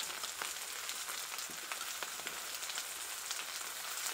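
Pieces of beef intestine sizzling on a hot flat iron pan: a steady crackling hiss with many small pops.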